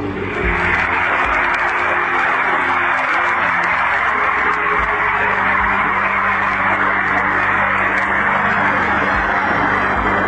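A live audience applauding steadily after a recited line of poetry, thinning out near the end, with low background music underneath.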